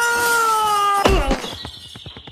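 A long drawn-out meow: one steady cry lasting over a second that bends in pitch and stops a little after a second in. A faint rapid ticking follows.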